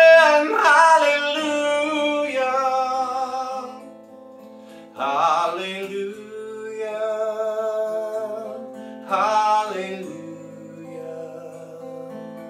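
A man singing long held notes over strummed acoustic guitar, with new phrases beginning about five and nine seconds in.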